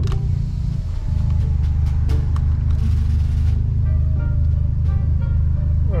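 A steady low rumble of car cabin noise, with music playing faintly over it.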